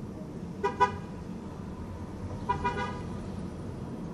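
Car horn sounding in short toots: a quick double beep about two-thirds of a second in, then a few rapid beeps around two and a half seconds in. Beneath them, the steady low drone of a car driving, heard from inside the cabin.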